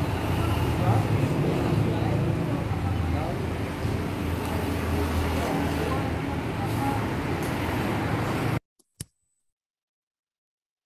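Roadside street ambience: steady road-traffic noise with a low engine rumble and faint voices in the background. It cuts off abruptly to silence about eight and a half seconds in.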